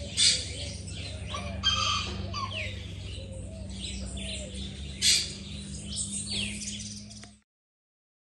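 Wild birds singing: several birds chirping and calling at once, with quick high chirps and short sliding calls overlapping, over a low steady hum. The sound cuts off suddenly shortly before the end.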